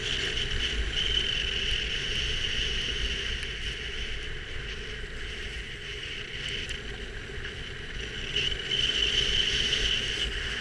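Wind rushing over an action camera's microphone while sliding downhill, mixed with edges scraping over packed snow; it eases a little mid-way and grows louder again near the end.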